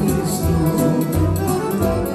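Piano accordion playing a tune with electronic keyboard accompaniment, over a recurring low bass line.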